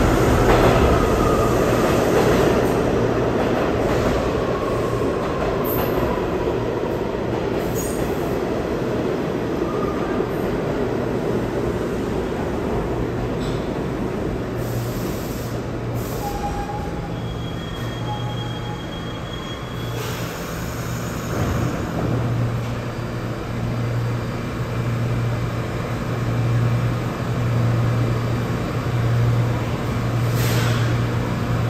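New York City subway train moving through the station: a loud rumble that fades over the first several seconds, with wheel squeal gliding down in pitch. A steady low hum runs underneath and grows stronger in the last several seconds.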